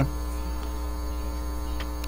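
Steady electrical mains hum, a constant low drone with many evenly spaced overtones and no change through the pause.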